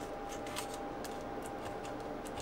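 Quiet room tone with a faint steady hum and a few soft ticks.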